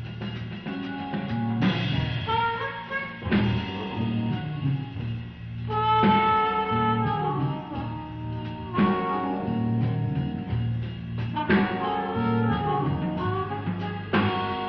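Electric blues band playing live: a harmonica blown through a hand-held microphone plays long held and bent notes over drums and bass.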